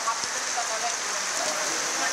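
Heavy rain pouring down onto floodwater, a steady loud hiss with no letup.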